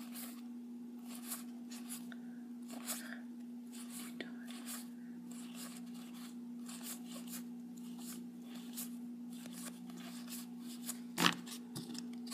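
Yu-Gi-Oh! trading cards slid one past another in the hands as a deck is fanned through, a soft paper swish every second or so, with one louder snap near the end. A steady low hum runs underneath.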